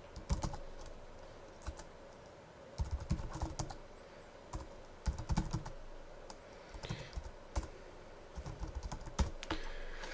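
Computer keyboard being typed on in several short bursts of keystrokes, with pauses of a second or so between bursts.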